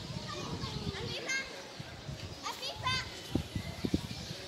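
Children's voices shouting and playing, with two bursts of high, rising calls in the middle; a few low knocks near the end.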